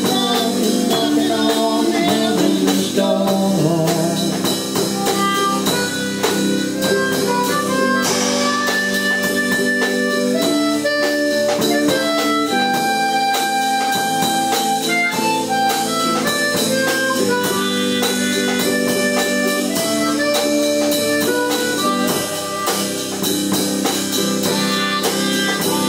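Blues band playing: harmonica played into a microphone, with long held and bending notes, over electric guitar and a drum kit keeping a steady beat.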